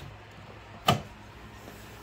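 A single sharp click about a second in, as a Nissan 240SX's exterior door handle is pulled and the door latch releases, over a faint steady low hum.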